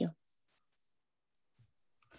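Faint insect chirping: short high notes repeating about twice a second, four times.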